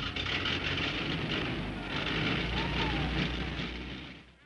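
Motor vehicle engine running with a low rumble under a steady rough hiss, fading out near the end.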